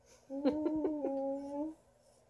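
A three-month-old baby cooing: one drawn-out, vowel-like coo lasting about a second and a half, its pitch holding fairly steady and edging slightly up.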